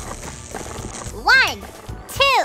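Cartoon background music, with one short voice-like sound that rises and falls in pitch about a second in.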